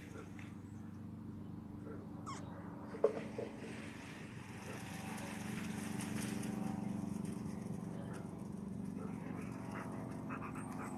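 Dogs at play, with one short, sharp dog vocalisation about three seconds in, over a steady low hum.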